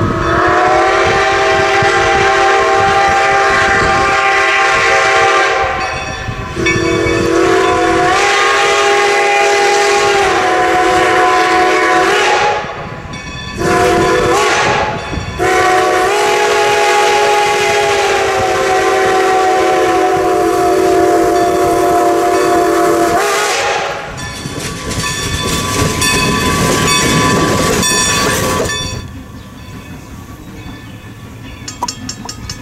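Steam locomotive chime whistle, several notes sounding together, blowing the grade-crossing signal: two long blasts, a brief one, then a final long blast, the pitch stepping slightly as the valve is worked. After it, the quieter running sound of the train on the rails.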